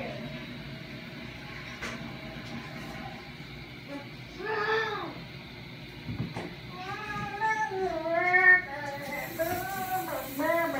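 A child's voice singing: one short note about four seconds in, then a longer run of gliding sung notes over the last three seconds.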